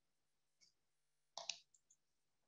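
Near silence on a video-call line, broken by one brief click about one and a half seconds in.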